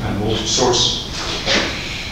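A man speaking, the words unclear.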